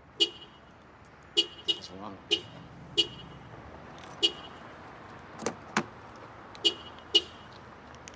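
A car's horn chirping short beeps again and again as the doors are locked and relocked with the remote key fob: about eight chirps at uneven intervals, with a couple of sharp clicks between them.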